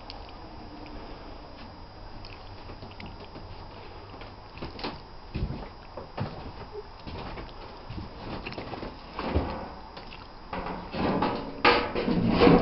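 Low steady hum at first, then scattered knocks, bumps and scrapes from about halfway in, denser and louder near the end, as a handheld camera is moved and bumped about.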